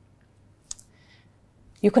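A pause in a woman's talk, broken by one short, sharp click about two-thirds of a second in and a faint brief hiss just after. She starts speaking again near the end.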